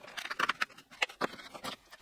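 A cardboard advent calendar door being opened and a small item pulled out: a run of light, irregular clicks, scrapes and rustles of card and packaging.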